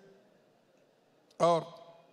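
A man's speech through a microphone: a pause of near silence with faint room tone, then one short spoken word about a second and a half in.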